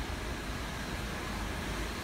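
Steady indoor room noise: an even hiss over a low rumble, typical of building ventilation, with no distinct event.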